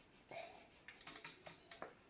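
Faint scratching and clicking of an oil pastel on paper in short strokes: a quick run of small clicks and scrapes.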